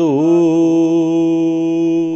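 A voice chanting Gurbani, holding one long steady note on the last syllable of a Hukamnama verse line after a brief dip in pitch at the start.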